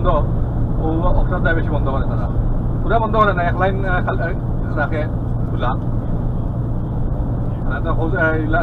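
Steady low drone of a Scania lorry's engine and tyres at motorway speed, heard from inside the cab. A voice talks over it at times.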